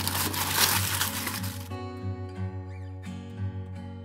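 Aluminium foil crinkling as hands press it down around the rim of a dish. About a second and a half in it cuts off suddenly, and plucked-guitar background music plays.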